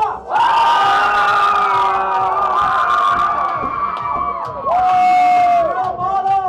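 Crowd cheering and screaming, many voices held long and high at once. One loud, held scream stands out near the end.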